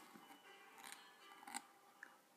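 Faint scratching of a broad-nibbed pen on squared paper as letters are written: two brief scratches, about a second in and again half a second later.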